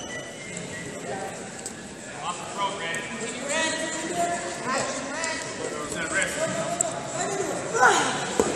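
Voices calling out across a large, echoing hall, growing busier from about two seconds in, over scattered sharp slaps and footfalls of two freestyle wrestlers hand-fighting on the mat.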